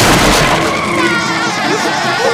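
Cartoon sound effect of a lawnmower smashing out through a wooden shed: a sudden loud crash at the start, then steady mower engine noise as it drives off, with music underneath.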